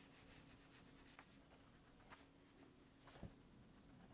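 Near silence: faint scratching of a fine brush dabbing acrylic paint onto a painting board, with a few soft ticks.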